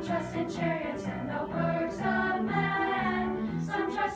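Youth choir of mixed voices singing in parts, with piano accompaniment.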